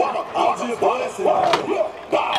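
A single sharp clack about one and a half seconds in: a kick scooter landing on the skatepark concrete after dropping off a ramp box, heard under people talking.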